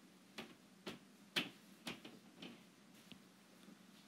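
Light taps on a tablet screen: five short clicks about half a second apart, the third loudest, then one faint tap a little later.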